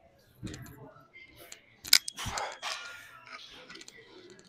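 Pair of dumbbells being picked up and brought onto the knees for an incline press: light knocks, then a sharp metal clack about two seconds in and a dull thud just after.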